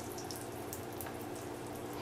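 Breaded chicken cutlet frying in olive oil in a cast iron skillet: a quiet, steady sizzle.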